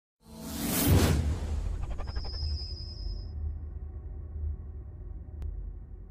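Logo-intro sound effect: a whoosh swells to a loud peak about a second in, then a high shimmering ring fades out over the next two seconds above a sustained low rumble.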